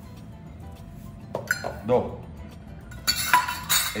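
Stainless steel measuring cups and saucepan clinking as cups of sugar are measured and tipped into the pan, with two louder, sharper clatters in the last second as the cups are set down.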